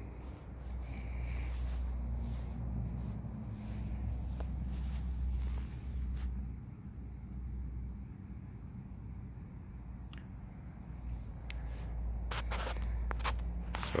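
Steady high-pitched chirring of insects, with a low rumble underneath and a few sharp clicks near the end.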